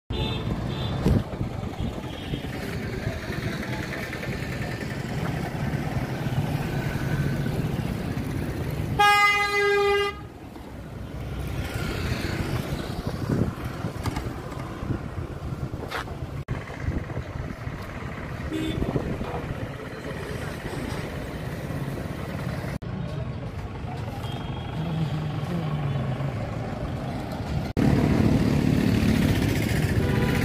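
Busy street traffic with people talking, and a vehicle horn giving one loud, steady honk of about a second, about nine seconds in.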